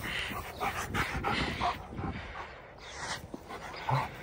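German shepherd making a string of short, breathy play noises while roughhousing.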